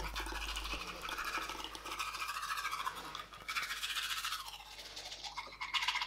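Manual toothbrush scrubbing teeth in rapid back-and-forth strokes, with a brief pause about three seconds in.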